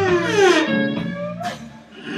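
A blues electric guitar recording playing bent, sliding notes, with a cello bowed along in the low register.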